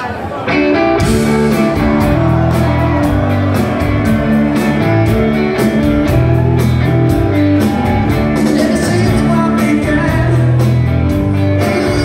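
Rock band playing live, electric guitars, bass and drums kicking in together about half a second in and running at full volume with a steady drumbeat.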